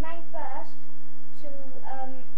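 A steady electrical hum runs throughout, with two short bursts of a child's voice vocalizing over it, one at the start and one near the end.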